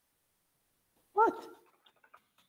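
A single short, loud vocal sound about a second in, pitched and falling at the end, like a bark or a brief exclamation. A few faint clicks follow near the end.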